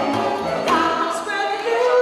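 Live acoustic band music: a woman singing over harp, guitarrón bass notes and harmonica.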